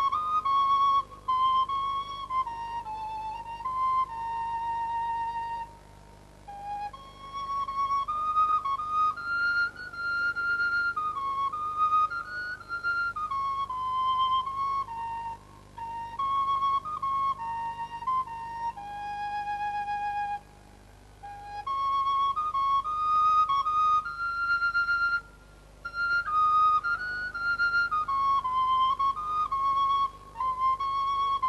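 Background music: a solo flute playing a slow melody, one held note at a time, with a few short pauses between phrases.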